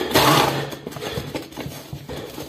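A small electric kitchen appliance's motor runs in a short burst of about half a second near the start, followed by lighter knocks and handling noise.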